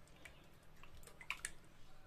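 A spatula stirring chicken pieces in a wok of sauce and water: faint wet squelches and a few light clicks against the pan.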